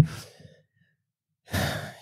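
A man's voice trailing off at the start, then a gap of silence, then an audible breath about a second and a half in, just before he speaks again.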